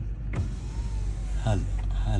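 A car's electric window motor lowering the side glass, a steady whine lasting about a second and a quarter, over the car's low constant hum.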